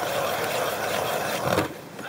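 Hand-cranked ice auger boring into lake ice: a steady rasping scrape as the blades cut, stopping about one and a half seconds in.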